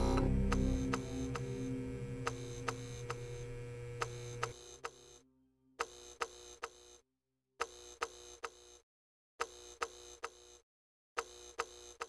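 End-screen music ends on a held chord that fades out over the first four seconds or so. Then a clicking sound effect follows: quick groups of about four sharp clicks, repeating about every two seconds with silence between.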